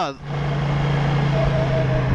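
Kymco AK550 maxi-scooter's parallel-twin engine running at a steady cruise, a steady low hum under a constant rush of wind and road noise.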